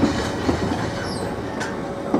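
Bogie stone hopper wagons of a freight train rolling past with a steady rumble, their wheels clicking over rail joints a few times.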